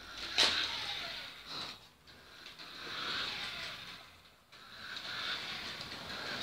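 Small electric motor of a toy radio-controlled car whirring as it drives in three surges, its wheels running on a wooden floor.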